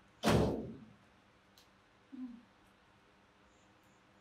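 A single dull thump about a quarter second in, fading out within about a second, followed by a faint click and a brief faint low sound.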